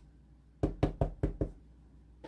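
A wood-mounted rubber stamp knocking down onto paper on a tabletop: five quick sharp knocks in under a second, about a second in.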